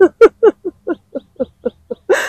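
A woman laughing: a run of about eight short falling "ha" sounds, about four a second, fading toward the end.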